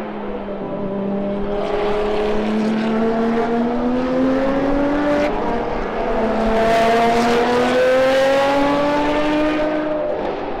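Ferrari track cars' high-revving engines accelerating on the circuit. The engine note climbs steadily in pitch, drops back about five seconds in, then climbs again.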